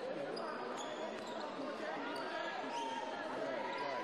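Live basketball game sound in an arena: a basketball being dribbled on the hardwood court under a steady murmur of crowd and player voices, with a few short high squeaks.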